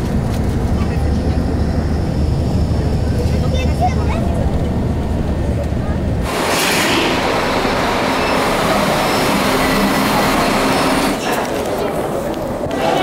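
Steady low engine and road rumble inside a moving bus. About six seconds in it cuts off abruptly and gives way to a brighter, steady hissing noise.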